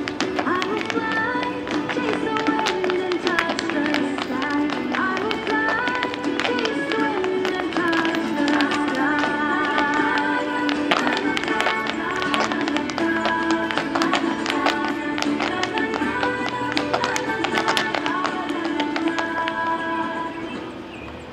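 A lively Irish dance tune with the rhythmic tapping of step dancers' hard shoes striking pavement in time with it.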